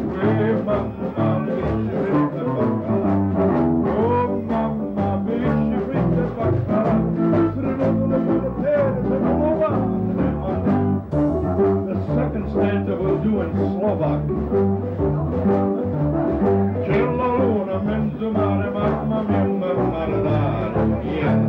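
Live small-band music in a swing style: a small brass horn plays the melody over guitar, a steady bass line and drums.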